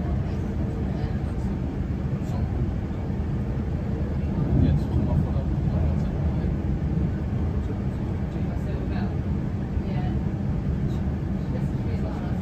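Steady low rumble of a moving electric train heard from inside the carriage, with light clicks and rattles, and a brief swell in level about halfway through.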